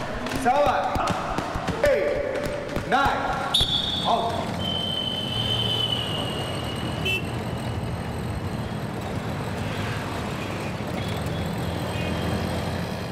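Voices counting aloud for the first few seconds, then an auto-rickshaw's engine running steadily in city traffic, heard from inside the cab. A long, high, slowly falling tone sounds across the change.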